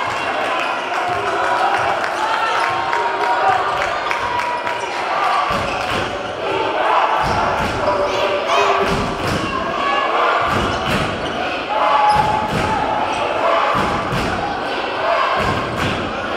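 Basketball dribbled on a hardwood gym floor, bouncing again and again, most distinctly from about five seconds in, over the steady chatter of spectators in a large hall.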